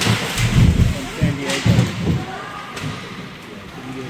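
Ice hockey players and the puck banging against the rink boards and glass: heavy thuds about half a second in and again near two seconds, with crowd voices echoing in the arena.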